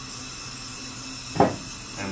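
Gas torch hissing steadily as its flame dries and firms the walls of a freshly thrown clay pot on the wheel, with a low hum underneath. About one and a half seconds in, a short loud burst of a person's voice cuts across it.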